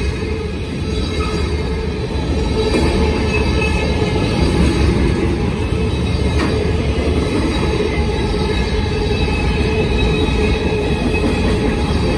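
BNSF manifest freight train's cars rolling past close by: a steady heavy rumble of steel wheels on rail, growing a little louder about two seconds in, with thin high wheel squeal running over it.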